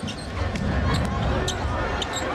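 Basketball dribbled on a hardwood court: a few sharp bounces, two of them about half a second apart near the middle, over steady arena crowd noise.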